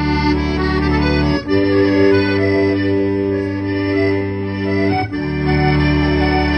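Piano accordion playing alone: sustained chords over a steady bass, with the chord changing sharply about a second and a half in and again about five seconds in.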